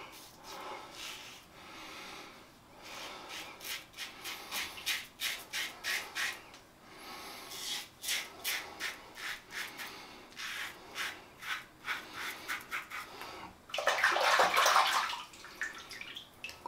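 A Tatara Masamune titanium safety razor scraping through stubble and lather in many short strokes. Near the end comes a brief burst of running water.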